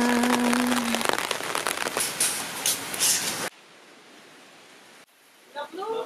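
Heavy rain falling on an open wooden deck, a dense even patter, with a steady held tone over the first second. The rain cuts off suddenly about three and a half seconds in, leaving a much quieter covered space.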